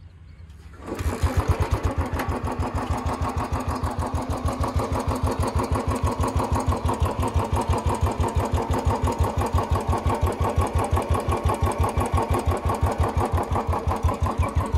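A Royal Enfield Bullet 350 single-cylinder engine, the older BS3 version, starts about a second in and settles into a steady idle with an even, regular beat. It is the noisier, more vibrating of the two generations, with no filter in its original bend pipe.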